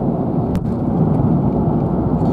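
Steady low road and engine rumble inside the cabin of a car driving on an expressway, with a single light click about half a second in.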